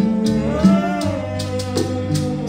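Live Haitian twoubadou band playing: acoustic guitar and bass over regular sharp percussion strikes. About half a second in, a long sung note rises and falls without words.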